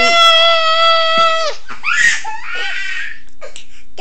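A high-pitched voice holds one long, steady squealing note for about a second and a half. Short laughing vocal sounds follow about two seconds in.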